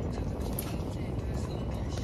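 Steady low rumble inside a car cabin with the engine running, and a short click about half a second in.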